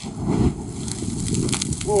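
Liquid accelerant splashed onto a bonfire catches with a sudden whoosh about half a second in, and the flames flare up the pile, roaring with crackling.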